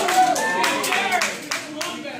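Wrestling crowd clapping in rhythm, several claps a second, led by a wrestler clapping his hands above his head, with voices shouting over the claps.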